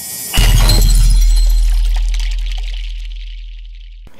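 Intro title sound effect: a rising whoosh that lands, about a third of a second in, on a loud cinematic impact. Its deep boom and bright high crash fade slowly over the next three seconds.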